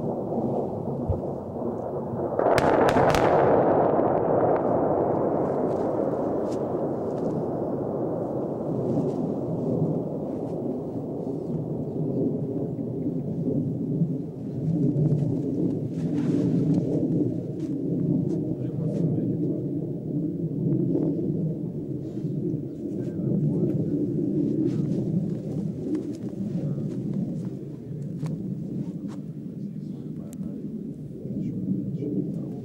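A distant explosion, likely a shell burst, goes off sharply about two and a half seconds in and rolls away in a long echoing rumble across the valley. A low rumble carries on after it, with faint scattered cracks.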